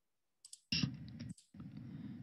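A couple of short computer mouse clicks, then faint hiss and hum from the start of a video's soundtrack as it begins playing.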